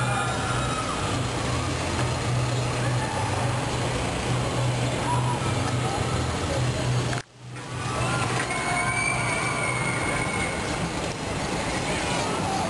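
Steady roar of a glassblowing furnace with a low hum under it, cut by a brief dropout about seven seconds in.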